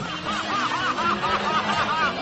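Someone laughing in a quick string of short, arching 'ha's, about four a second, over soft background music.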